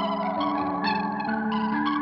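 Instrumental jazz band music in which a synthesizer plays sustained chords through effects, with a wavering pitch, and new notes are struck several times.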